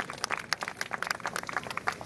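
Audience clapping and applauding, a quick scatter of many separate claps.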